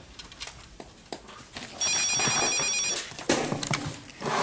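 Office desk telephone ringing once: a single high electronic trill about a second long, about two seconds in.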